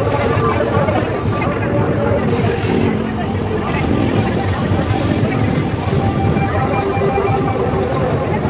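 Loud, steady street din of a night-time festival procession: crowd voices mixed with music and the engines of the vehicles carrying the lit floats.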